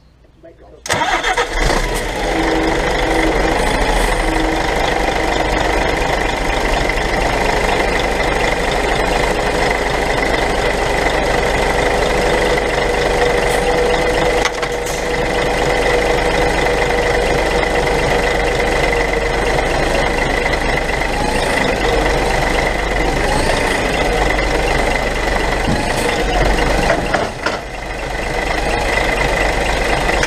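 Diesel engine of an HGV tractor unit starting about a second in, then running steadily with a steady high whine while the unit reverses under the semi-trailer to couple up.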